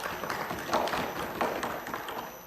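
Applause in a legislative chamber: many people clapping and thumping desks in a dense, irregular patter.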